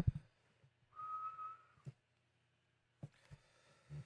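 A low thump right at the start, then about a second in a single steady high-pitched tone lasting under a second, like a whistled note or an electronic alert, followed by a couple of faint clicks.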